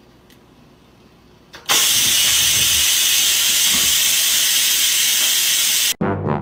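A Cuckoo pressure rice cooker venting steam: after a quiet start with a faint click, it breaks into a loud, steady hiss about two seconds in that stops abruptly near the end.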